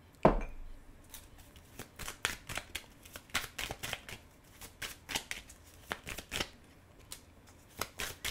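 A single knock as a cup is set down on the table, then a tarot deck shuffled by hand: a long run of irregular, crisp card snaps and flicks.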